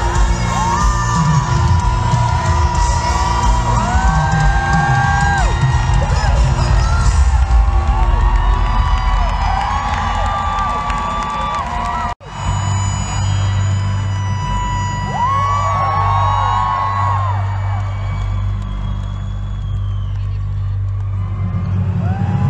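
Live pop concert music played loud through an arena sound system, with heavy bass, heard from within the crowd as fans scream and whoop over it. About twelve seconds in, the sound drops out for an instant where the recording cuts, then the music carries on.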